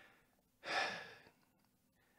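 A man's single audible breath, a short quiet hiss of air about half a second in, taken in a pause between phrases.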